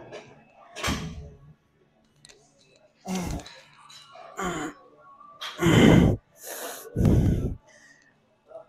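A lifter breathing hard and grunting with strain while getting heavy dumbbells into position and pressing them, with a throat-clear about halfway through. The loudest grunt comes about six seconds in, and another follows near the end.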